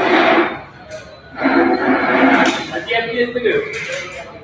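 Speech only: a person talking close to the microphone in two stretches, a short one at the start and a longer one after a pause of about a second.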